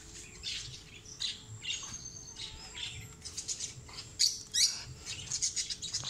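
Birds chirping with short, high calls, sparse at first and busier in the second half, loudest just past four seconds in.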